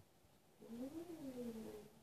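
A single drawn-out, closed-mouth 'mm' vocal sound lasting a little over a second, rising then falling in pitch.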